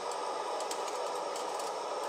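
Isobutane canister camp stove burning, turned down low: a steady, even hiss.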